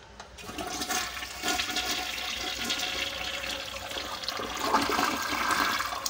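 Tank toilet flushing. A rush of water starts about half a second in, swirls in the bowl, and grows louder toward the end.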